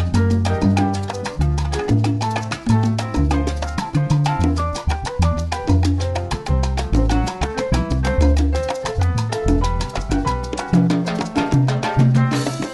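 Afro-Cuban piano trio playing a fast groove in C major at 190 BPM: repeating piano figures over a bass line and quick, steady drum and percussion hits. It is a guitar backing track, with no lead part on top.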